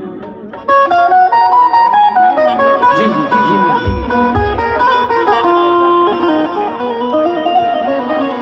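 Live qawwali instrumental passage: a melodic instrument plays a run of stepped notes, coming in sharply about a second in as a sung line fades. A few low thumps sound near the middle.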